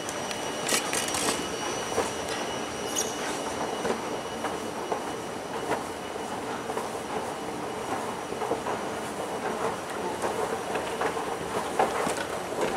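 Escalator running as it carries a rider down: a steady mechanical rumble with frequent clicks and a couple of brief high squeals near the start.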